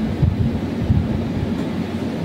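Low, uneven background rumble with no speech.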